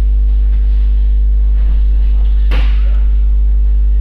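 Loud, steady electrical mains hum, a low buzz with a stack of overtones, with one brief sharp noise about two and a half seconds in.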